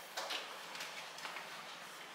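A few faint knocks and scrapes as a refrigerator is pulled out from its cabinet nook.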